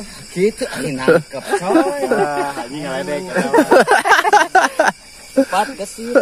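Men's voices talking and exclaiming in short, excited bursts; the words are not made out.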